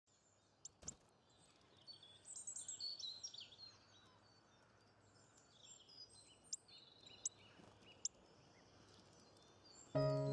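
Faint birdsong, chirps and short trills over a soft hiss, busiest between about two and three and a half seconds in, with a few sharp ticks scattered through.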